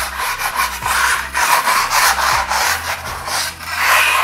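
Steel spatula scraping over a painted wall in a rapid series of short strokes, knocking off small lumps of dried paint left from rolling, as surface preparation before acrylic filler.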